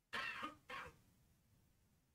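A man clearing his throat into a headset microphone: two short, quiet bursts in quick succession within the first second.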